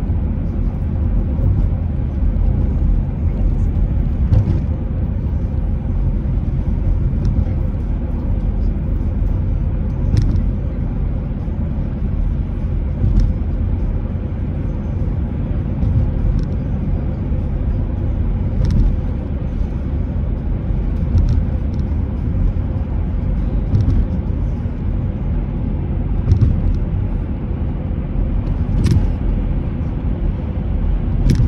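Road and tyre noise of a car driving at highway speed, heard from inside the cabin: a steady low rumble with no let-up, marked by a few faint clicks.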